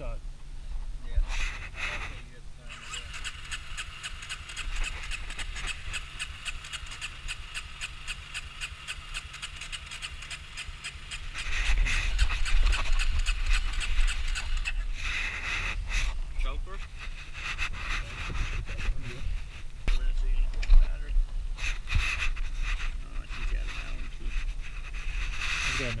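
A motorcycle's electric starter cranking its air-cooled 250 single-cylinder engine in long attempts after it ran out of fuel and was primed. The sound gets louder and heavier about eleven seconds in and again near the end, as the engine tries to catch.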